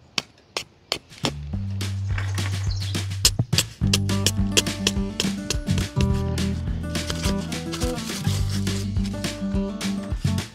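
Acoustic guitar background music with a plucked, steady rhythm comes in about a second in. Before it come a couple of sharp knocks from a hammer driving metal landscape staples into the ground.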